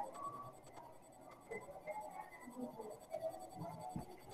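Faint, irregular scratching of a pen writing on paper, close to the microphone.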